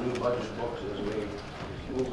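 Indistinct voices of people talking quietly off-microphone in a meeting room.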